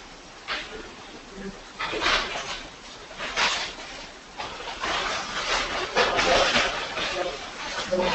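Indistinct, muffled talking in which no words can be made out, coming in short irregular breathy bursts that grow busier in the second half.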